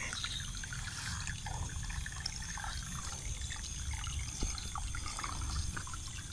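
Faint, steady trickling of water in a rice-paddy ditch, with a few small drips or ticks and a low rumble underneath.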